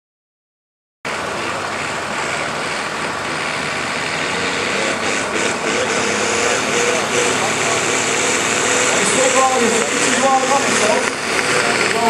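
Farm tractor's diesel engine running hard under full load as it drags a tractor-pulling sled, starting suddenly about a second in and growing steadily louder. Voices come in over it near the end.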